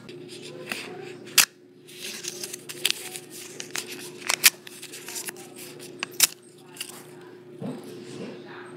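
A small paper note being torn up by hand: a series of sharp rips, the loudest about a second and a half in, around four and a half seconds in and just after six seconds, with softer paper crackling between, over a steady low hum.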